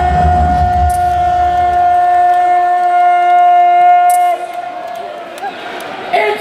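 A darts MC's voice holding one long, drawn-out note as he calls out the player's name, over a crowd. There is a deep boom in the first second, and the call cuts off about four seconds in.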